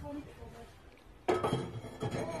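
Refractory fire brick being pushed into a steel firebox: a sudden clatter of brick knocking and scraping against the metal, a little over a second in.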